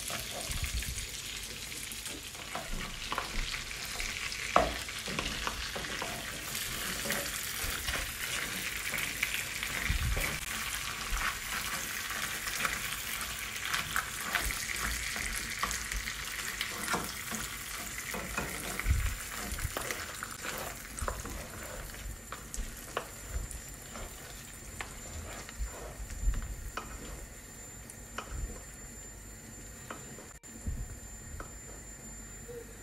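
Garlic butter sizzling gently on low heat in a non-stick pan as cooked lobster halves are laid in and moved with a wooden spoon, with scattered clicks and knocks of shell and spoon against the pan. The sizzle dies down somewhat in the last third.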